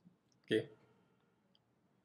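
Mostly quiet room tone, broken by one short spoken "okay" about half a second in, with a couple of faint clicks from a computer mouse.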